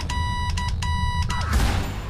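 Electronic closing theme music for a news webcast: a run of short, high beeping notes over a steady low bass, with a falling tone and a rush of noise about one and a half seconds in.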